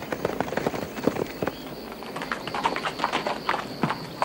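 Hoofbeats of ridden horses: an irregular clatter of hooves on hard, rocky ground.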